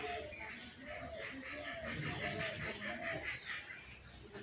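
Chickens clucking in a quick run of short, repeated calls, over a steady high-pitched buzz.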